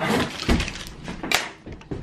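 Cardboard box and plastic packing being handled while a package is unpacked: irregular crinkling and crackling with a few sharp knocks, the strongest about half a second in.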